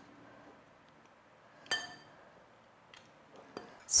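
A metal spoon clinks once against a glass pudding bowl, ringing briefly, as crumbly biscuit mixture is spooned in. A few faint taps follow near the end.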